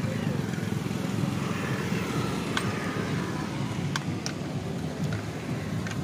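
An engine idling steadily with a low, even rumble, with a few light metallic clicks partway through.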